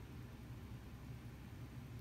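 Faint room tone: a steady low hum under light hiss, with no distinct sounds.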